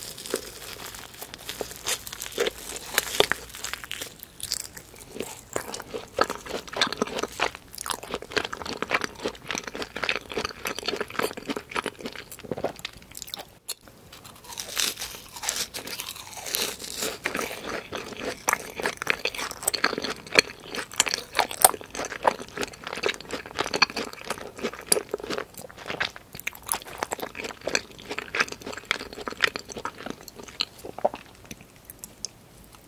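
Close-miked eating of a fried cream cheese ball: repeated crisp crunches from the fried shell and wet chewing, with many small clicks throughout and a brief gap about halfway.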